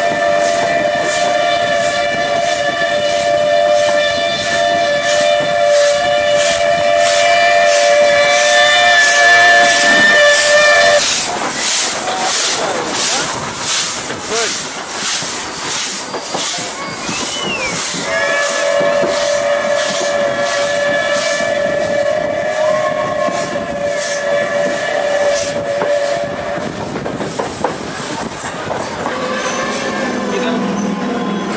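Steam whistle of a WP-class steam locomotive sounding two long, steady, two-toned blasts, the first running about eleven seconds and the second starting about eighteen seconds in. Underneath and between them, the hiss and regular rhythmic beat of the moving trains.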